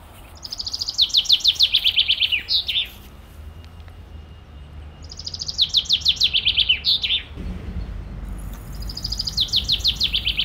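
A songbird singing the same song three times a few seconds apart: each a rapid run of high, quickly repeated descending notes ending in a short flourish. A low rumble comes in about seven seconds in.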